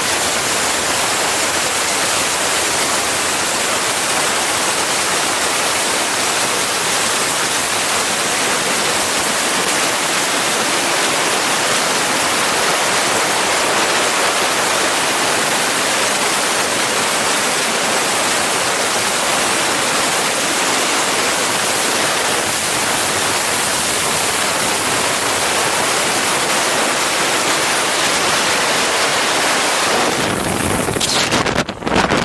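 Wind rushing over the camera microphone during wingsuit flight: a loud, steady hiss of airflow with no change in it.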